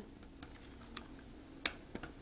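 A few faint clicks and taps of an HP Mini 210 netbook's plastic case as the release tab is pushed in and fingers work at the bottom panel, with one sharper click about one and a half seconds in.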